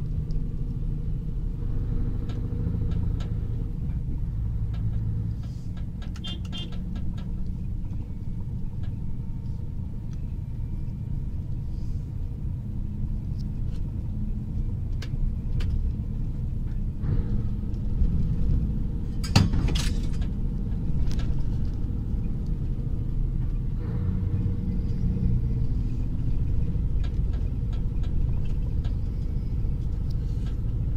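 A semi-truck's engine and road noise heard from inside the cab while driving: a steady low rumble. A few light rattles come about six seconds in, and a sharper knock comes about two-thirds of the way through.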